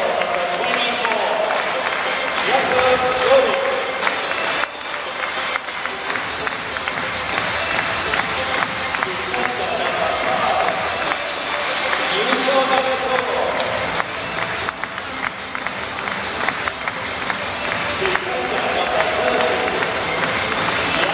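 Football stadium crowd noise with scattered clapping during the home team's line-up introduction. A voice over the public-address loudspeakers comes and goes, with music underneath.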